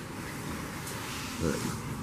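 Steady outdoor background hiss with no distinct event, and a man says one short word about one and a half seconds in.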